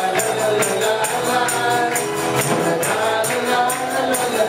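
Live worship band music: a congregation and singers sing a wordless "lai lai lai" melody with the band, over a steady clapped beat of about two claps a second.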